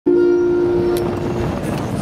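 Live acoustic band music: a steady held chord. A single sharp click sounds about a second in.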